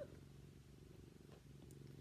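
Domestic cat purring steadily and faintly, right up against the microphone.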